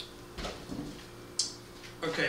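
A red plastic gas can set down on a concrete floor: a dull thump with some handling rustle, then a short sharp hiss about a second later.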